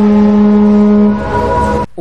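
Film soundtrack: a loud, steady, low horn-like tone held for about a second and a half over other sustained tones, all cutting off abruptly near the end.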